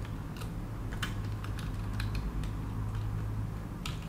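Computer keyboard keys pressed in scattered, irregular taps as code is edited, over a low steady hum.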